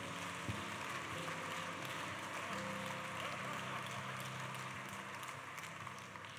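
A congregation applauding, an even patter of many hands clapping, with soft held music notes underneath. The clapping eases off slightly toward the end.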